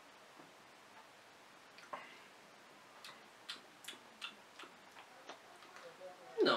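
Faint, irregular lip and tongue smacks from a man tasting a mouthful of beer: about half a dozen small clicks, starting about two seconds in, over near silence.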